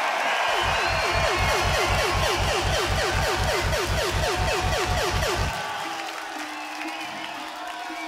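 A fast run of booming electronic kick-drum hits, about five a second, each with a falling pitch sweep, over a cheering festival crowd. The run stops about five and a half seconds in, leaving the cheering and a low held tone.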